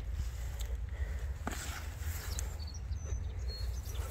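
Wind rumbling on the microphone with steps through tall grass, and a few faint, short high chirps about two to three seconds in.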